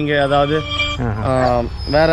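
A man talking, with music underneath.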